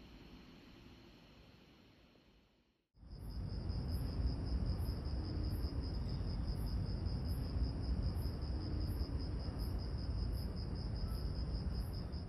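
Insects chirping in a steady, evenly pulsing high trill over a low outdoor rumble. It cuts in suddenly about three seconds in, after a quiet start.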